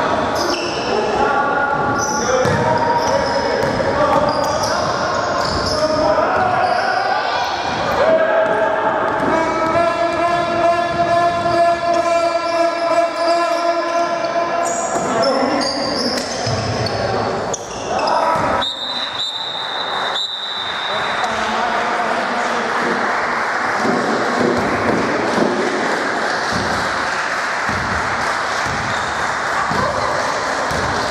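Indoor basketball game in an echoing gym: a ball bouncing on the hardwood floor and players calling out. In the middle there is a steady held tone for about five seconds. Later comes one long, high whistle blast of about two seconds, typical of a referee's whistle.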